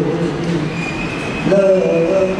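A man singing into a handheld microphone in long held notes. The first note fades out within the first half second, and a new note begins about one and a half seconds in.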